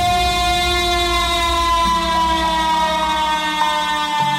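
Breakdown in a Frenchcore mix: a held synth chord drifting slowly down in pitch over a low bass rumble, with no kick drum. The chord changes about two seconds in.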